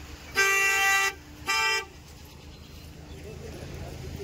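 A vehicle horn honks twice, a longer honk and then a short one, at a steady pitch, over a low background rumble.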